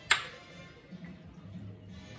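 A single light metallic clink with a short ring that fades within about half a second, from a small stainless-steel prep cup being set down after the diced jalapeño is tipped out.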